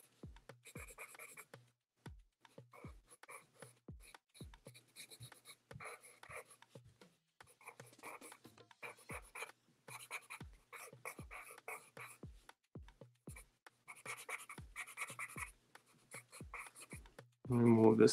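Pencil scratching on sketchbook paper in clusters of short, quick strokes with brief pauses between them. A man's voice starts speaking just before the end.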